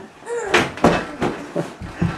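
A large bag being handled and pulled open on the floor: a handful of sharp knocks and rustles, a few tenths of a second apart, after a short bit of voice.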